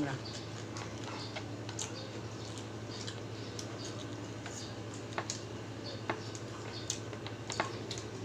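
Close-up eating sounds: scattered short clicks and smacks of chewing and of fingers picking at rice and food, about eight in all, over a steady low hum.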